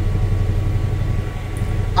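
1966 Chevy C10 pickup's engine idling steadily, heard from inside the cab as a low, even hum.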